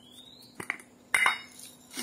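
A couple of light clicks, then a sharper clink a little past a second in, as seasoning containers are handled and knocked against the counter or bowl while eggs are seasoned. A faint steady hum runs underneath.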